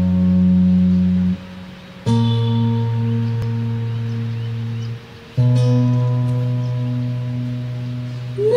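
Sundanese kacapi (board zither) plucked in the instrumental opening of a tembang Cianjuran song: long, ringing low notes, one stopping about a second in and new ones struck about two and five seconds in, each held about three seconds.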